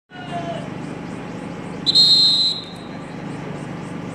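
A referee's whistle gives a single short blast about two seconds in, lasting about half a second, over steady background noise.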